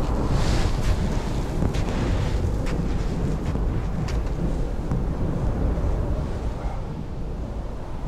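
Wind buffeting the microphone in a steady low rumble, with footsteps crunching on loose crushed gravel, about one a second through the first half.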